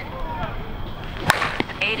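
2024 Anarchy Fenrir USSSA slowpitch softball bat striking a pitched softball: a single sharp crack a little past halfway through.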